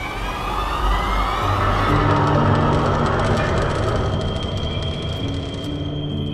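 Dark, tense horror film score: low held notes shift beneath a swelling wash of noise while pitches glide upward through the first two seconds, and a steady high tone enters near the end.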